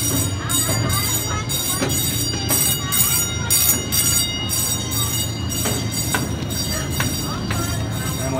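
Miniature park train ride running, heard from on board: a steady low drone with irregular clacks from the cars on the track.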